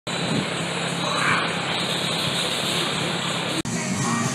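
Steady rushing noise with a low hum, as of a large drum fan running, broken by a brief dropout near the end.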